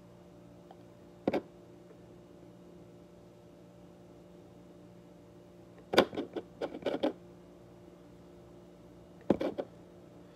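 A few light clicks and knocks of small objects being handled at a table: one about a second in, a short cluster around six to seven seconds, and another near the end. Underneath is a low steady hum.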